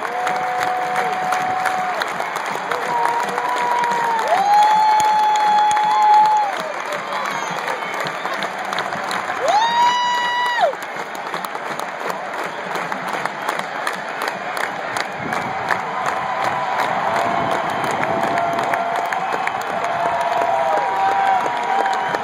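Large stadium crowd cheering and applauding without a break. Over it, a marching band's brass plays a run of long held notes that step up and down in pitch.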